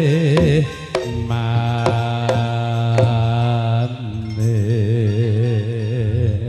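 Javanese gamelan music for a tayub dance: a singer holds long notes with a wide, wavering vibrato over a few sharp drum strokes.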